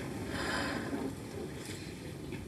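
A woman's soft breath about half a second in, over a steady low rumble and hiss.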